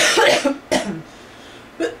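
A woman coughing into her fist: two coughs, the first about half a second long and the second shorter, just after it.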